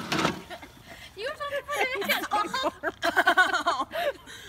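People's voices laughing and exclaiming without clear words, with quick bursts of laughter near the end. A short noisy burst comes right at the start.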